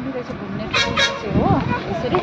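A short horn toot about a second in, among people's voices.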